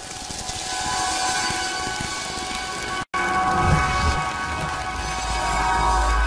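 Station-ident sound bed: a steady hiss with several held tones that fades in and breaks off for an instant about three seconds in. It returns with a deep bass rumble underneath.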